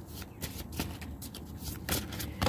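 A deck of reading cards being shuffled by hand: a quick, irregular string of card clicks and slaps, the loudest just before the end.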